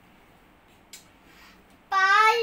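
A pause in a young girl's singing: near-silent room tone with a single faint click about halfway through, then her singing voice comes back in loudly right at the end.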